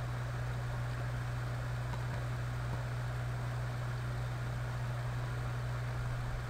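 Steady low hum with an even background hiss, unchanging throughout: electrical or fan background noise of the recording, with no real machining sound.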